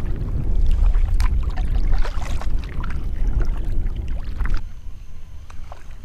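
Wind buffeting the kayak-mounted action camera's microphone, with water splashing and knocking around the kayak hull. The rumble drops away sharply about four and a half seconds in.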